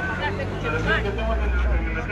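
Indistinct voices of people talking, over a low rumble of a vehicle on the street that swells through the middle and fades near the end.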